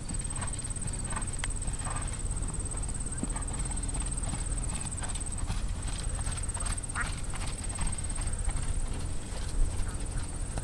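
Horse trotting on sand footing: soft hoofbeats over a steady low rumble, with a constant high-pitched whine throughout.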